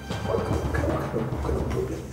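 Low, rumbling dramatic film score with a timpani-like drum roll under it.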